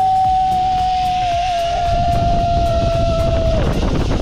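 Zipline trolley pulleys whining along the steel cable in one steady high tone that sinks slightly in pitch and drops away near the end. Wind rushing over the microphone builds up from about halfway as the rider gathers speed.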